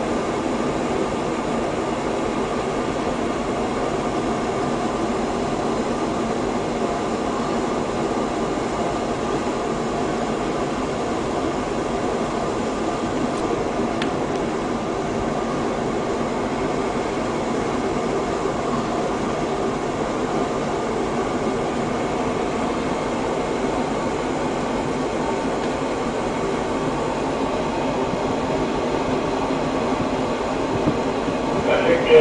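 Steady drone of a ship's engines and machinery heard on board while under way, even in level throughout with a mix of low hums.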